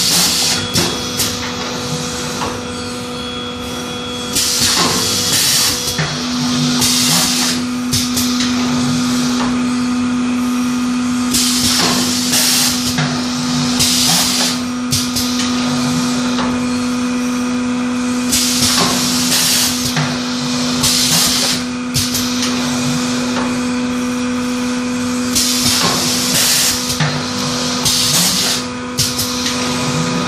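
Pneumatic paper plum cake mould forming machine cycling. Short hisses of compressed air vent from its cylinders every couple of seconds, with sharp clicks of the press, over a steady hum.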